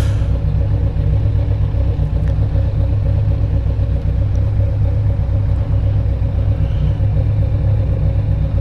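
Motorcycle engine idling with a steady, even low running note, no revving.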